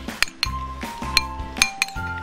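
A metal spoon clinks several times against a ceramic bowl while food is stirred in a marinade, over background music with a steady bass line.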